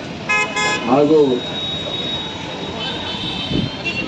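A vehicle horn sounding two quick short toots near the start, followed by a man's voice over a microphone and a faint, steady high tone in the second half.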